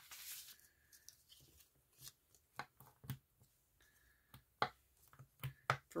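Paper pages being handled and shuffled in a ring-bound journal: soft rustles with a few light clicks and taps scattered through.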